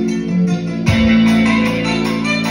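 Recorded music with guitar and bass, played over a JBL K2 S9900 horn loudspeaker in a room. A new phrase comes in with a deep bass note about a second in.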